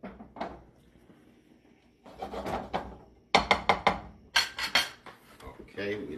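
Kitchen utensils clattering against a pan and dishes: a short clatter, a scraping stretch, then a quick run of sharp clinks in the second half.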